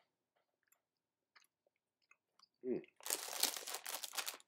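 A very soft orange wine gum being chewed, heard at first only as faint wet mouth clicks. About three seconds in, a loud, dense scratchy rustle starts and runs on.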